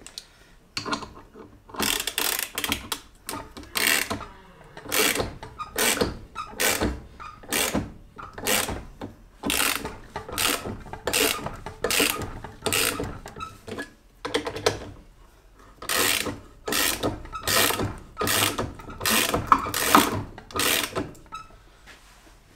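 A hand ratchet being swung back and forth on a bolt threaded into a BMW E36 rear wheel hub, its pawl clicking about twice a second in runs with a longer pause past the middle. The bolt is being driven in to push the wheel hub off the trailing arm.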